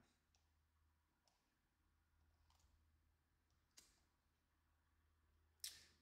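Near silence: room tone with a low hum and a handful of faint, separate mouse clicks.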